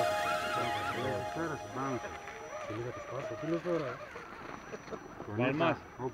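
Background music fading out in the first moment, then people talking.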